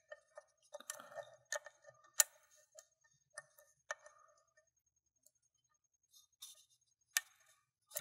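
Faint, irregular metallic clicks and scrapes of a thin lock pick working the pins of an Eagle Lock five-pin cylinder under tension, the pick snagging in the tight paracentric keyway. The sharpest clicks come about two seconds in and again near the end.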